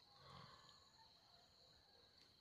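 Near silence outdoors, with only a faint steady high-pitched tone.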